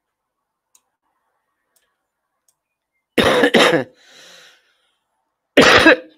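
A person coughing: a loud double cough about three seconds in, a breath drawn in after it, then another cough near the end.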